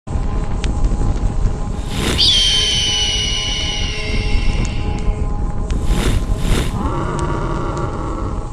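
Animated intro sound effects: a steady fire-like rumble, with a long high cry about two seconds in that falls slightly in pitch, two quick whooshes about six seconds in, and then a lower held tone.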